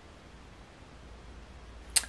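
Quiet room tone with a faint low hum: the silence of the room, which she draws attention to. One sharp click near the end.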